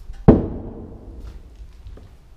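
A single heavy thud about a third of a second in, its sound dying away with a brief echo.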